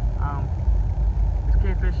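A loud, uneven low rumble of wind buffeting the phone's microphone, with speech over it.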